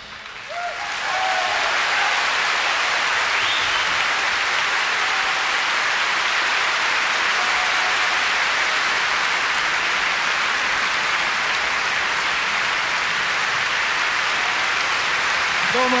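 Audience applause in a concert hall, building over the first second after the band stops and then holding steady.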